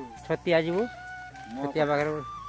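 A chicken calling twice, each call about half a second long, over steady background music.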